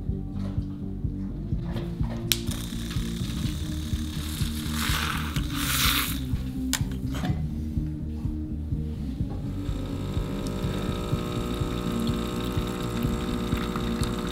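Background music runs throughout over kitchen handling sounds: a few sharp clicks and a short burst of noise about five seconds in. From about ten seconds in, an automatic espresso machine runs with a steady mechanical hum as it brews.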